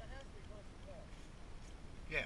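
Faint voices of people talking some way off, over a low wind rumble on the microphone.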